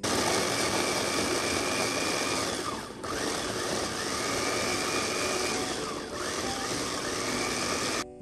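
Electric mini food chopper (Mitochiba) running loudly as its blades chop chillies, shallots, garlic and kencur into a spice paste. Twice, about three seconds apart, the motor briefly winds down and speeds back up as the press-top is let go and pushed again.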